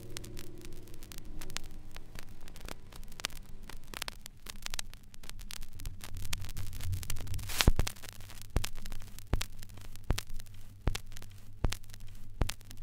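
Surface noise of an old disc recording after the song ends: irregular crackles and clicks over a steady low hum, as the last held notes fade out in the first second or so. The hum grows stronger about halfway through.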